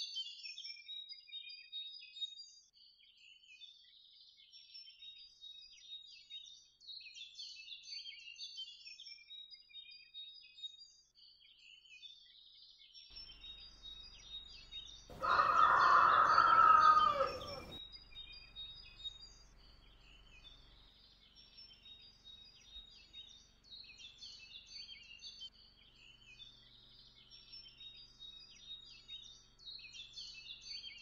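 Small birds chirp steadily throughout. Midway, a rooster crows once, loud, for about two and a half seconds, with the pitch falling at the end.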